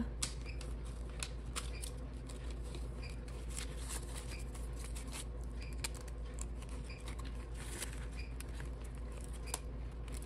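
Paper banknotes and clear vinyl binder pockets being handled: scattered short rustles, crinkles and light clicks as bills are fingered and tucked away and a page is turned, over a steady low hum.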